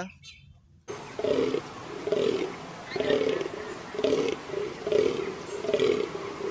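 Fallow deer buck groaning in the rut: a deep call repeated about once a second, starting about a second in, over a steady hiss.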